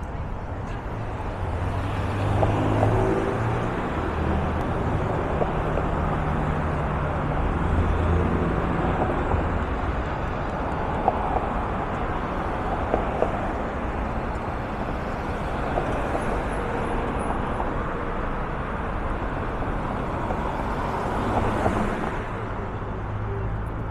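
City street traffic at an intersection: cars driving past with a steady rumble. A vehicle engine's hum rises and shifts in pitch over the first several seconds.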